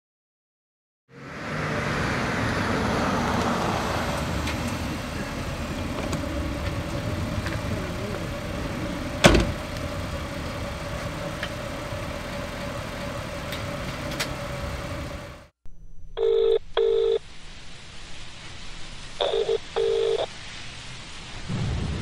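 Steady street noise with a low hum and one sharp click about nine seconds in. Then, from about two-thirds of the way through, a telephone ringback tone heard down the line: a paired 'ring-ring' of steady tones in the Australian double-ring pattern, repeating about every three seconds.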